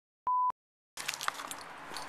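A single short, steady electronic beep, about a quarter second long, on silence. About a second in, outdoor background noise with a few light clicks sets in.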